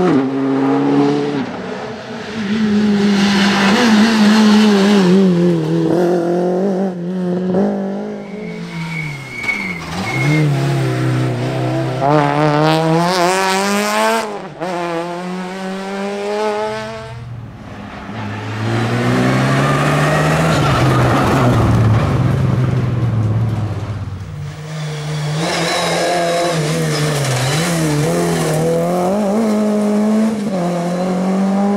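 Rally car engines revving hard as the cars accelerate, the pitch climbing through each gear and dropping at the shifts. The sound breaks off abruptly twice as it cuts from one car to the next.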